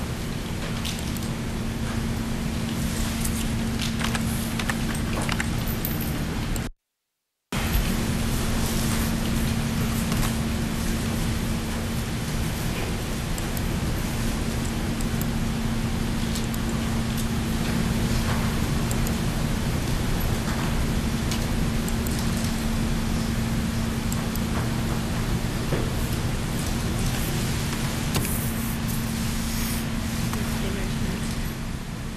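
Steady hiss with a low electrical hum from an open courtroom audio feed while no one is speaking, with a few faint rustles. The feed drops out to dead silence for under a second about seven seconds in.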